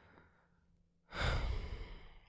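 A man's heavy sigh close to the microphone: after a faint breath, a loud exhale starts about a second in and fades over about a second.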